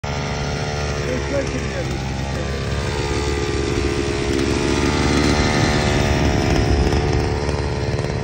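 Petrol brush cutter's small engine running steadily, its speed rising and falling as it is throttled up and eased off.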